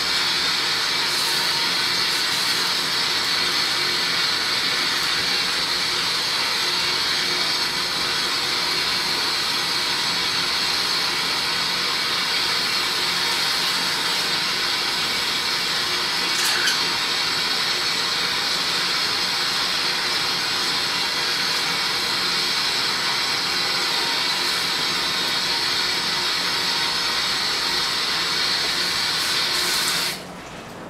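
Tap water running steadily from a salon backwash sink faucet into the basin, as an even rushing hiss; it cuts off suddenly at the end as the tap is shut.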